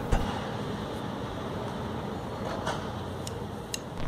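Steady outdoor city background hum with no clear single source, with a few faint ticks in the second half.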